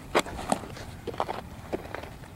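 Sharp knocks and scuffs from a softball catcher's blocking drill: the ball striking the dirt and glove as she drops onto her knees in shin guards. There are four or five separate knocks, the loudest about a fifth of a second in.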